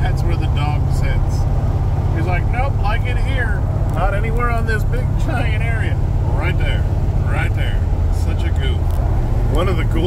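Steady engine and road drone of a C3 Corvette cruising at highway speed, heard from inside the cabin.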